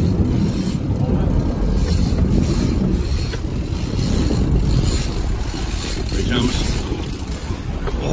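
Sport-fishing boat's engines running steadily in reverse as the boat backs down on a hooked marlin, with a low rumble and wind on the microphone.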